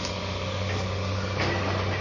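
Construction-site machinery engine running steadily in the background, a constant low hum with a noisy edge, from demolition and clearance work. A faint knock comes about one and a half seconds in.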